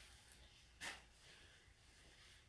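Near silence: room tone, with one brief soft sound a little under a second in.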